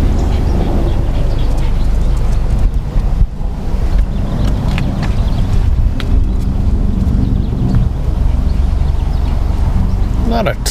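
Wind buffeting the camera microphone outdoors: a loud, steady low rumble that dips briefly about three seconds in.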